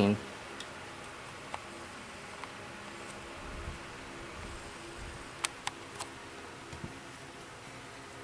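A steady low hum with a few faint, scattered clicks and light rustle, two of the clicks close together past the middle.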